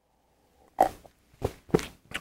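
A person gulping beer from a glass mug: three short swallows, the first about a second in and two close together near the end.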